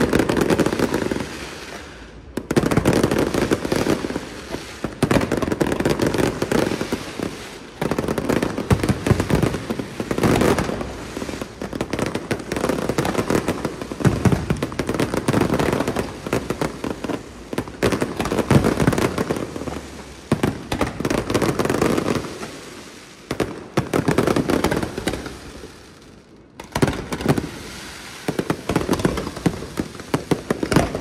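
Fireworks display going off: rapid, overlapping bangs and crackling from many aerial shells, coming in waves, with a short lull about two seconds in and another shortly before the end.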